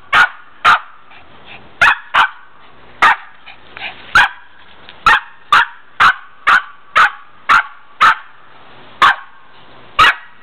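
Pomeranian barking in short, sharp, high barks again and again, settling into a steady run of about two barks a second from about five seconds in.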